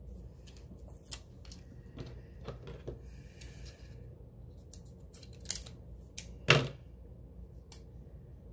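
Small scissors cutting a paper sticker by hand, in scattered short snips with paper handling. The loudest snip comes about six and a half seconds in.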